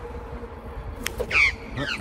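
Australian magpie giving two short harsh calls about a second and a half in as it comes in to swoop, over a steady low rush of wind noise on the microphone from riding.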